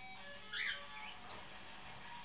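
African grey parrot chattering: a short squeaky chirp about half a second in and a smaller one around a second. Underneath, an electric guitar played through effects pedals in another room sustains faint notes.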